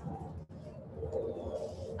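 Faint outdoor ambience with a bird calling.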